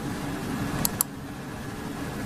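Two quick computer-mouse clicks, about a second in and a fraction of a second apart, over a steady low room hum.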